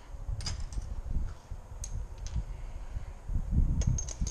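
A few light, sharp metal clicks and clinks of hand tools and a removed engine main bearing cap being handled and set down on a workbench, over a low, uneven rumbling noise.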